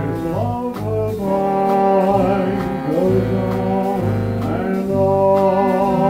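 Seven-piece jazz dance band playing a slow ballad live: trumpet, trombone and two reeds holding sustained chords that shift every second or so, over piano, bass and light drums keeping time.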